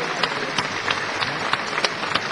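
Audience applauding at the end of a live opera duet, a dense patter of many hands clapping.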